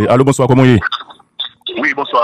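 Speech: a man talking, with a pause of about a second in the middle.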